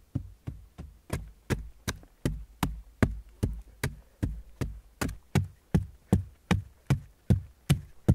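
A hand-held stone striking hard, dry clay soil again and again to break it up: a steady rhythm of sharp knocks, about two and a half a second, each with a dull thud beneath it.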